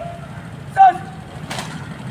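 A drill commander's short shouted word of command about a second in, falling in pitch at the end, then a sharp clatter about half a second later as the guard of honour starts its rifle drill. A steady low rumble runs underneath.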